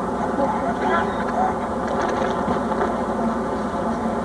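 Faint, indistinct voices over a steady rushing background noise.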